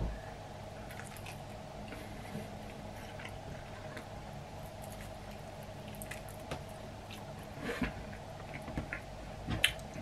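Quiet chewing and wet mouth sounds of a person eating cold chicken wings off the bone, with scattered small clicks and smacks, more of them near the end, over a faint steady hum.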